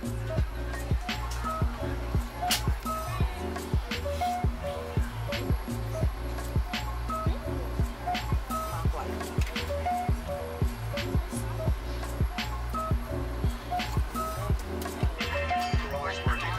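Background music with a steady beat, a repeating melody and a deep bass line.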